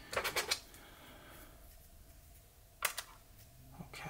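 Small plastic clicks as the legs of a plastic toy droid are snapped back into their joints: a quick few clicks at the start, then a single sharp click about three seconds in.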